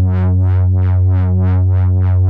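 Shaper iOS synthesizer sounding a sawtooth pad, holding one low note. An LFO sweeps the filter cutoff open and shut about three times a second, giving a rhythmic wah-like pulsing.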